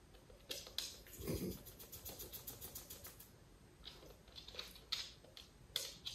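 Claws of two miniature schnauzers clicking and tapping on a hard floor as they shuffle and turn, in quick irregular runs of taps, with a soft low thump about a second in.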